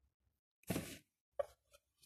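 Hard plastic faceplate of a toy Iron Man mask being handled and flipped open: a brief scuffing rustle, then one short click about half a second later.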